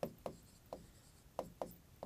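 Handwriting on a board: a pen drawn across the surface in about five short, faint strokes.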